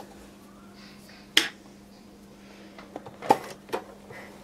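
Small orange-handled scissors snipping at the embroidered fabric beside the sewing machine foot: one sharp snip about a second and a half in, and another near the end with a few lighter clicks around it.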